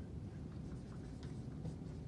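Dry-erase marker writing on a whiteboard: a few faint, short strokes of the felt tip on the board.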